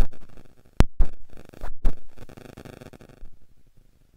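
Several sharp knocks in the first two seconds, over a room noise that cuts off about three seconds in.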